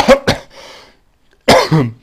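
A man coughs twice in quick succession.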